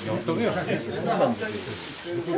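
Several people talking over one another: overlapping conversational voices in a crowd.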